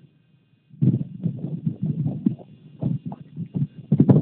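Wind buffeting a phone's microphone in irregular low rumbling gusts, starting suddenly about a second in.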